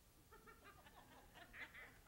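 Near silence, with faint voices murmuring in the room.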